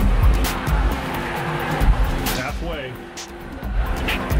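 Electronic workout soundtrack music with a heavy, steady bass beat; gliding pitched sounds come in a little past two seconds, and the music dips briefly about three seconds in.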